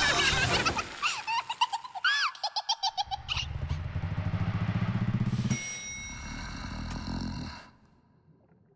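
Cartoon sound effects: squeaky, bouncing voice-like chirps, then a low pulsing buzz and a second low rumble with a few high steady tones, which cuts off suddenly shortly before the end.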